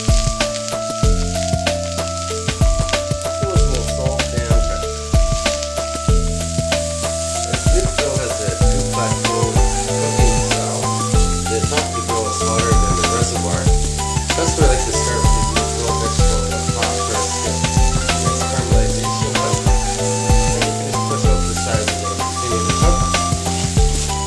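Sliced onions and mushrooms sizzling in oil on a ridged grill plate, with the scrape and click of a wooden chopstick stirring them. Background music with a steady stepping bass line runs alongside.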